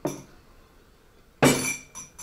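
A stemmed wine glass being handled on the table, clinking twice: a light knock at the start and a louder clink about one and a half seconds in, with a brief high ringing.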